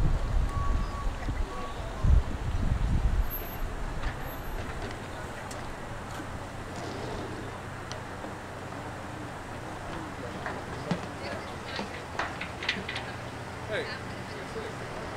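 Low rumble of wind on the microphone for the first three seconds, then the snowplow truck's engine running steadily at low speed as it creeps through the course, with faint voices in the background.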